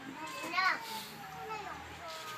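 Indistinct speech, with one short spoken phrase about half a second in and quieter voices after it.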